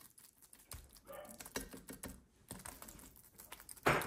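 A table knife cutting soft eggs on toast and spreading the runny yolk: faint, scattered clicks and short scrapes as the blade meets the toast and the ceramic plate.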